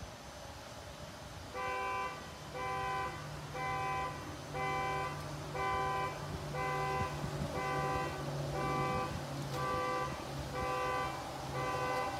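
An electronic beeper sounding about once a second, each beep about half a second long and made of several tones at once, over a steady low hum.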